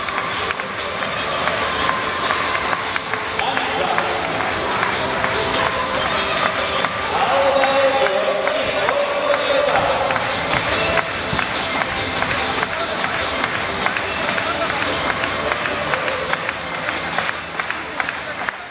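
Stadium PA music played during the starting-lineup introduction, with an announcer's voice and crowd noise over it, echoing around the stands.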